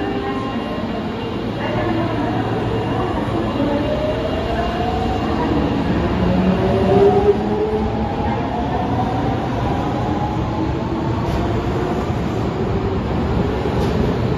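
Osaka Metro 22 series subway train pulling away from the platform: the VVVF inverter and traction motor whine rises in pitch in several tones as the train accelerates, over the low rumble of the cars. A couple of sharp clacks from the wheels come near the end.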